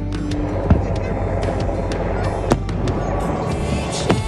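Aerial firework shells bursting, with two sharp loud bangs, about a second in and again around the middle, and smaller cracks among them, over background music.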